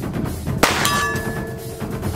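A single 9mm shot from a CZ Scorpion EVO S1 pistol a little after half a second in, followed by a steel target ringing for about a second as the bullet strikes it.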